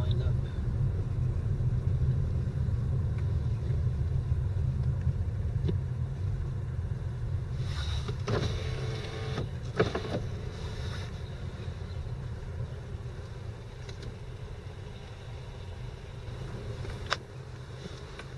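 Low, steady road and engine rumble heard inside a moving car's cabin. It slowly fades as the car slows. A brief louder sound with a pitched tone comes about eight seconds in.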